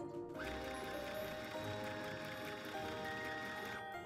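Electric sewing machine stitching through cloth, running steadily from just after the start and stopping shortly before the end, under background music.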